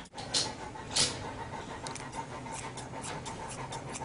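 A Newfoundland dog panting in a run of short, repeated breaths.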